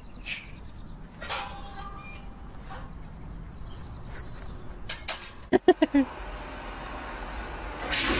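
A metal gate squeaking as it is pushed open: about four sharp, loud squeals in quick succession a little past halfway, over a steady background hiss.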